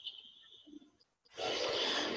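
Faint low background noise, a brief dropout to silence about a second in, then a steady hiss of outdoor background ambience from the news-interview footage as it resumes playing, just before the interviewee speaks.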